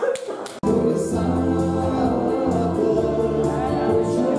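Live dance band playing a song with singing over a steady beat and bass. The music starts abruptly just over half a second in, after a brief moment of room noise.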